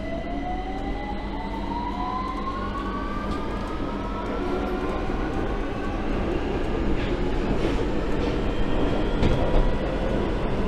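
Victoria line 2009 Stock tube train accelerating away from a station: the traction motors give a whine that rises in pitch and then levels off, over a rumble that grows louder as the train gathers speed, with a few clicks from the track near the end.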